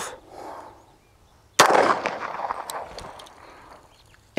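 A single pistol shot about a second and a half in, its report dying away over about two seconds.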